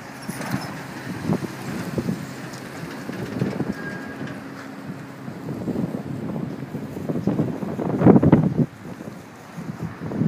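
Wind buffeting the camera's microphone in irregular gusts, with the strongest gust about eight seconds in.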